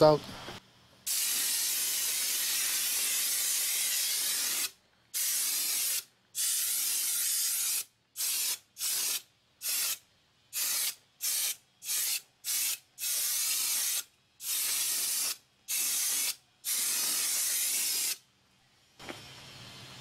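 Homemade venturi paint sprayer, a compressed-air blow gun drawing acrylic paint up a pen tube from a plastic bottle, hissing as it sprays. The spraying comes in a series of bursts: one long burst of about three and a half seconds, then many shorter ones of varying length.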